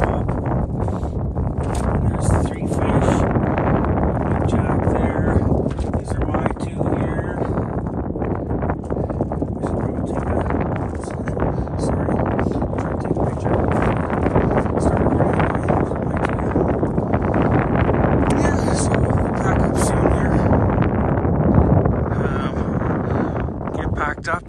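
Wind buffeting the phone's microphone: a loud, steady rumbling rush with scattered short clicks and crackles.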